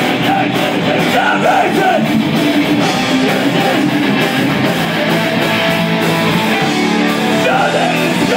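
A rock band playing live and loud, with electric guitars, electric bass and a drum kit.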